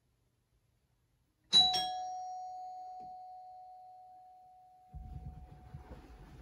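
A two-note doorbell chime, a higher ding then a lower dong struck about a quarter second apart, ringing out and fading slowly over about three seconds. Near the end, the rustle of a duvet being thrown off.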